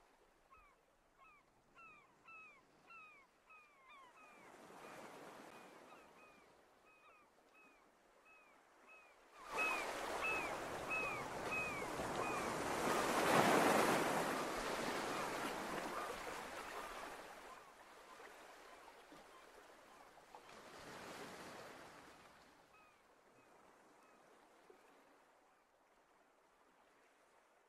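Waves washing in and breaking on a beach in three swells; the largest comes about ten seconds in and fades over several seconds. A bird calls in a fast run of short, downward-sliding notes, two or three a second, through the first twelve seconds and again briefly near the end.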